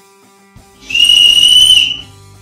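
The emergency whistle built into the Seventy2 pack's sternum-strap buckle is blown once, starting about a second in: a single high-pitched blast about a second long, steady in pitch.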